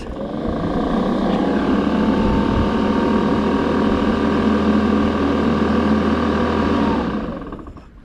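Toro 60V Commercial 21" battery mower's electric motor and blade spinning up with a rising whine, then running at a steady hum and whine. Near the end it winds down as the bail bar is let go.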